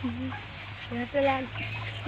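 A chicken clucking in the background: a short low call at the start and two more about a second later, over a steady low hum.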